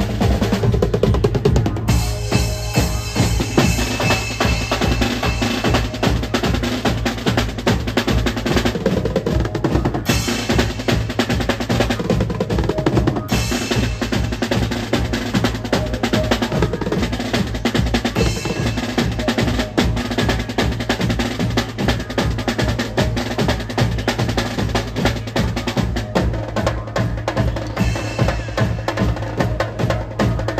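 A Mumbai banjo party's percussion section playing live: fast, dense drumming on snare and tom drums, with a bass drum struck with a mallet and cymbals.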